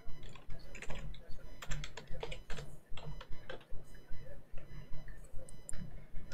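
Computer keyboard typing: irregular keystrokes, a few a second, as a short command is entered, over a steady low hum.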